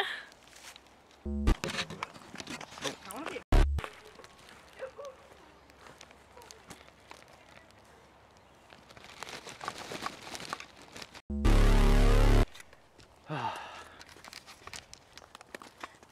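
Handheld camera knocked about among dry leaves, with two loud thumps in the first few seconds and faint rustling after them. About eleven seconds in comes a loud burst of harsh distorted noise lasting about a second.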